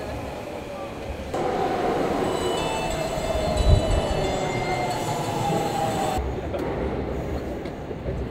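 Subway train running along the station platform as it slows to a stop: a whine with several high squealing tones that falls gently in pitch, with a single thump about four seconds in. The sound cuts about six seconds in to a duller rumble.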